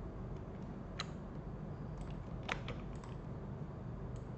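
A few scattered clicks of computer keyboard keys, one about a second in and a couple close together a little past the middle, over a faint steady low hum.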